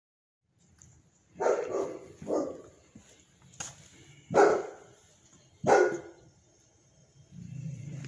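A dog barking, a handful of short barks spread irregularly over a few seconds.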